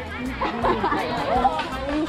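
Chatter of many girls talking at once around the cooking fires, with background music underneath.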